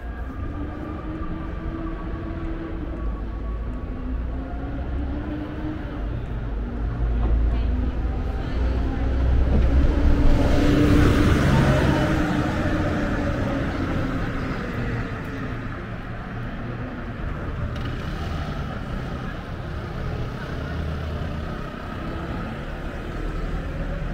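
Road traffic on a city street: a steady low rumble, with a vehicle passing close by that swells to its loudest about ten to twelve seconds in and then fades away.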